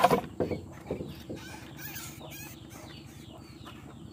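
Animal calls: a few loud, sudden calls in the first half second, then a string of faint, short chirping calls.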